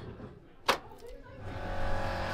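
A single sharp click about two-thirds of a second in, from the door OPEN push-button on a 1967 tube stock train's cab control desk being pressed. Steady background music fades in near the end.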